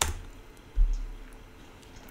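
A single computer keyboard key click at the start, then a dull low thump a little under a second in, over faint room noise.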